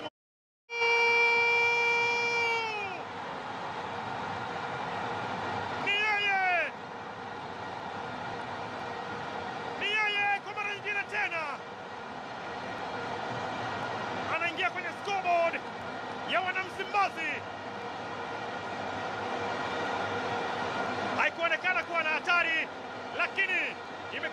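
A football commentator calling a goal in excited bursts over the steady noise of a stadium crowd. About a second in there is one long held call that drops in pitch as it ends.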